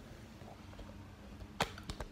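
Handling noise from the recording phone being moved and set in place: a faint low rumble, then two sharp knocks near the end, about a third of a second apart, the first the louder.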